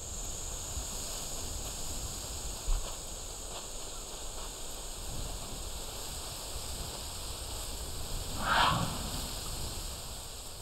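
Quiet outdoor ambience: a steady soft hiss with a faint high drone, a small knock near three seconds in, and a brief rustle about eight and a half seconds in.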